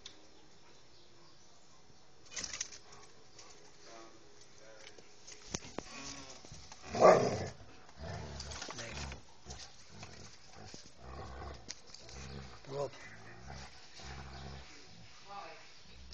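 Two husky-type dogs play-fighting, with scuffling and short dog vocal sounds through the romp. A person's sharp "nee!" about seven seconds in is the loudest moment.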